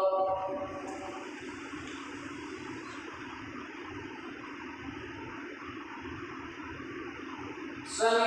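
A sustained chanted note fades out in the first half second. Then a steady, even rushing noise runs through a pause in the chanting, the room's background heard through the microphone.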